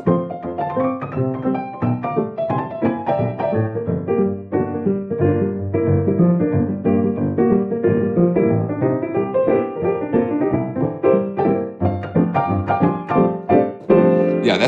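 Sampled Steinway Victory upright piano (the Crow Hill Vertical Piano virtual instrument), played in an upbeat rhythm of chords and melody. It runs through an old-radio speaker emulation that cuts off the treble and deep bass, giving a thin, narrow, radio-like tone.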